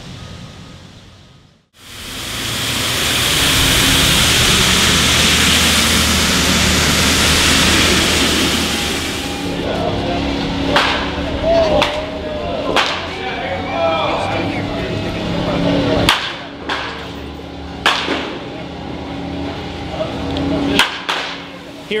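Batting practice in a cage: a series of sharp cracks of a bat hitting baseballs, one to three seconds apart, in the second half. Before them there is a loud steady rush of noise.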